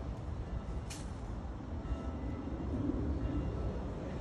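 Low, steady rumble of street traffic outdoors, with a brief sharp click about a second in and a faint hum rising near the end.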